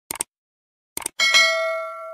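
End-card sound effects: two quick double clicks like a mouse button, then, just after a second in, a bright bell ding whose tones ring on and fade away.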